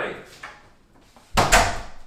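Apartment front door pushed shut, closing with a single deep thud about one and a half seconds in.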